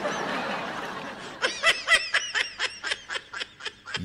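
A person laughing: a breathy stretch at first, then a quick rhythmic run of short laughing pulses from about a second and a half in.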